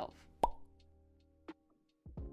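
A single pop sound effect about half a second in, with a brief ringing tone, over soft background music that fades out. A fainter click follows near the end.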